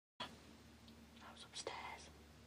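A person whispering a few words, breathy and faint, over a low steady hum, about a second in.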